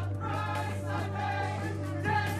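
Music: a group of voices singing together over a held low bass note.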